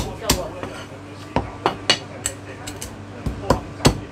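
A steel Chinese cleaver chopping cooked chicken on a thick round wooden chopping block: about ten sharp strikes at an uneven pace, with a pause about a second in before a quicker run of blows.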